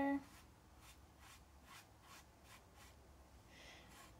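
Faint, repeated swishes of a small round watercolor brush stroking across wet paper as it spreads yellow paint outward.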